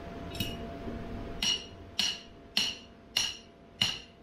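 A hammer striking a metal ground stake to anchor an inflatable bounce house: a run of about six ringing metallic blows, one roughly every 0.6 seconds, the first one light.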